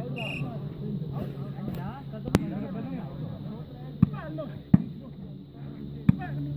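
A volleyball struck hard by hand three times during a rally, three sharp smacks. The loudest comes about two seconds in, and two more follow at about four and nearly five seconds.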